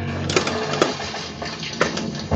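Spider-Man pinball machine in play: sharp mechanical clacks of the ball and coil-driven parts on the playfield, three of them standing out (about a third of a second in, just before one second, and near the end), over the game's own music.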